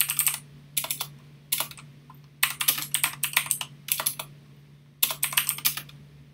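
Computer keyboard typing: quick runs of keystrokes in bursts broken by short pauses, the longest run in the middle, over a steady low hum.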